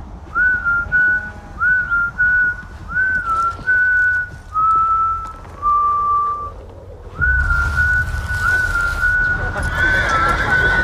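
A person whistling a slow tune in held notes, each phrase opening with an upward slide. After a short break about seven seconds in, the whistling resumes over a low rumble and hiss.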